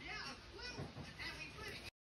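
A young child's voice, faint wordless high-pitched vocalizing, cut off abruptly near the end.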